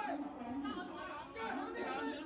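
Faint background chatter of people talking.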